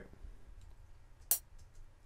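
A single sharp computer-mouse click about a second in, over faint room tone.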